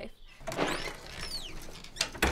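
Birds chirping, a few high whistled notes sweeping downward, over a rustling background noise.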